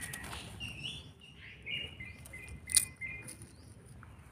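A hand rustling through soil and leaf litter while picking termite mushrooms, with one sharp click about three-quarters of the way through. A run of short, high chirps sounds in the background.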